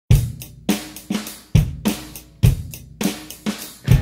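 Acoustic drum kit played unaccompanied: kick drum, snare and cymbal hits in a steady beat, each hit ringing out before the next.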